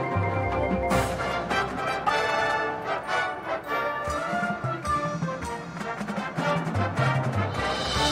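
High school marching band playing: sustained brass and woodwind chords over a moving low bass line, with sharp percussion hits about one and two seconds in.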